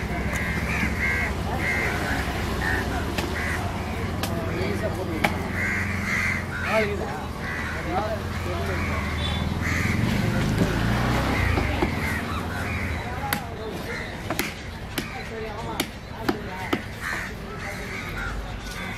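Crows cawing over and over against a steady low rumble and background voices, with a few sharp clicks now and then.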